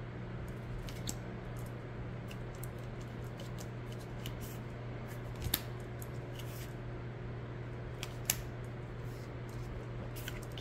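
Oracle cards of matte cardstock being slid off a pile and laid down one after another: soft papery scrapes and light taps, with a sharper click about five and a half seconds in and another around eight seconds, over a steady low hum.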